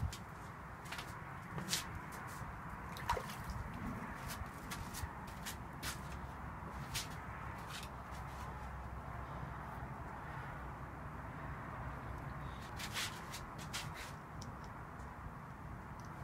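Light, scattered clicks and taps from handling a plastic pocket pH meter and plastic cups of water, over a low steady room hiss.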